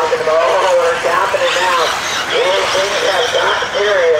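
A race commentator's voice calling the race, with electric RC off-road buggies running on the dirt track in the background.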